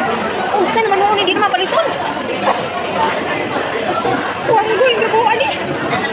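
Conversation: several voices talking over one another, with a hum of other diners' chatter behind.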